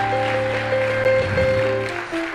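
Electric keyboard playing sustained, held chords, the chord changing near the end.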